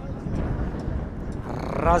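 Steady low outdoor background noise on a football pitch, with a man's commentary voice coming in near the end.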